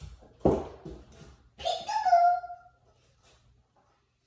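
A thump, then about a second later a short high-pitched whining cry that falls slightly in pitch.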